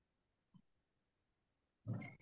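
Near silence on a video call's audio, broken near the end by a short vocal sound from the man leading the call as he begins to speak again.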